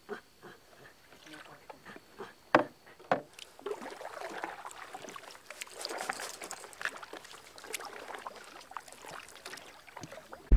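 Canoe paddle strokes in calm water: splashing and dripping off the paddle blade. There are two sharp knocks a little over halfway through the first third, followed by continuous irregular splashing.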